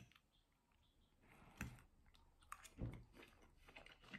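Faint chewing: a person eating, with a few soft mouth clicks scattered through the second half.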